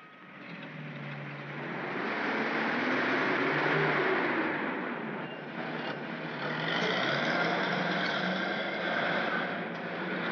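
Engine and road noise of motor vehicles, building over the first couple of seconds and then staying steady. From about six seconds in, a bus at the depot takes over, its noise joined by steady high whining tones.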